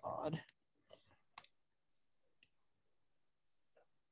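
A short murmured vocal sound, then a few faint, scattered button clicks: presentation controls being pressed while the slides fail to respond.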